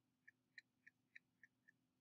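Near silence with six faint, evenly spaced clicks, about three a second, from the pen or mouse as paint is dabbed on in short strokes.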